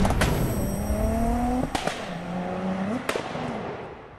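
Intro sound effect of a car engine revving, its pitch rising and then falling, with two sharp hits about a second and a half apart. It fades out near the end.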